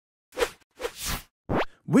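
Cartoon-style pop sound effects: a few short soft pops, then a quick pop that sweeps sharply upward in pitch about a second and a half in.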